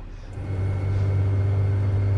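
Snowplow truck's engine running, a steady low rumble that sets in about half a second in.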